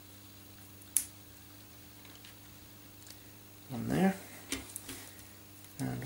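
Plastic cable clip and spiral-wrapped cables being handled and fitted by hand: a sharp click about a second in, then light ticks. Short wordless voice sounds about four seconds in and at the end, over a steady low hum.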